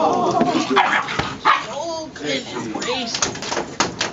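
Several puppies making short, high, bending calls as they play, heard over people's voices.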